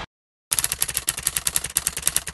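Typewriter typing sound effect: a fast run of sharp key clacks that starts about half a second in, after a brief dead silence.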